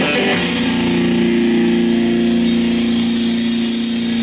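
Live rock band with distorted electric guitars: a chord is struck about a third of a second in and held ringing, with bright cymbal hiss above it.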